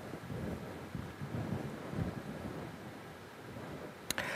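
Faint, low, uneven rumble of ambience in a large hall full of people.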